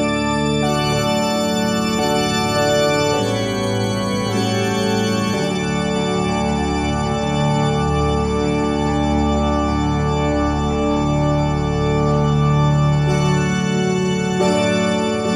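Instrumental introduction of a recorded tango backing track played over the hall's speakers: sustained keyboard chords that shift every second or two, with no voice yet.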